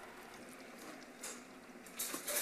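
Faint stirring of meat chunks and tomato paste with a wooden spoon in a cooking pot, with a slightly louder scrape of the spoon a little past the middle.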